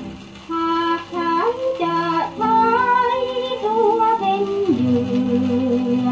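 A Thai vocal song played from an original shellac record. After a soft opening, a singer's voice comes in about half a second in, gliding between notes over instrumental accompaniment. Near the end it settles on a long held lower note.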